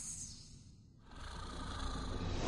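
Trailer sound design over a black screen: a high hiss dies away at the start. After a quiet moment, a low rumble swells steadily louder through the second half.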